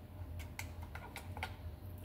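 Faint, irregular light clicks and crackles of a makeup brush's plastic packaging being handled and picked open with the fingers, over a low steady hum.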